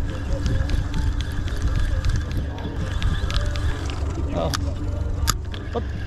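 Spinning reel being worked on a jigging rod: a few sharp clicks over a steady low rumble.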